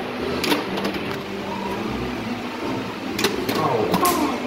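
Pinball machine in play: sharp mechanical knocks of its flippers and solenoids, one about half a second in and a quick run of three near the end, over a steady murmur of voices and machine sounds.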